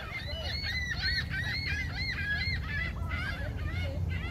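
A flock of gulls calling: many short, high, arching cries, several a second and overlapping one another.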